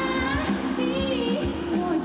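Live pop music: a woman singing a melody over acoustic guitar and a band with a steady drum beat.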